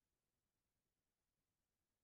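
Near silence: only a faint background noise floor.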